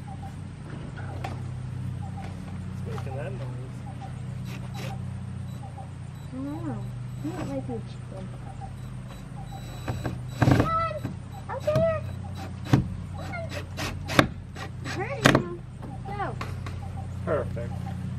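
Cordless drill driving screws to mount a door handle on a wooden barn door, in several short bursts through the second half, over a steady low hum.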